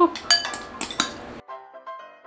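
Metal chopsticks clicking against a ceramic bowl as instant noodles are stirred, several sharp clinks. About one and a half seconds in this cuts off and soft background music with evenly spaced notes takes over.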